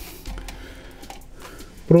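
A pause in speech filled with low room noise and faint rustling and low rumble from a handheld camera being moved; a man's voice starts again at the very end.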